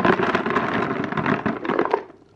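Horse feed pellets poured into a flexible plastic feed bucket: a dense, continuous rattle of pellets hitting the bucket that stops right at the end.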